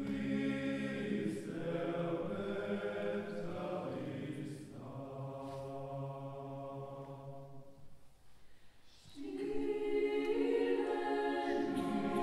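Choir singing long, sustained chords in a church. The sound dies away about eight seconds in, and the singing comes back louder a second later.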